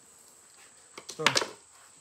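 Quiet room tone with a faint, steady high-pitched whine, broken by one short spoken word a little over a second in.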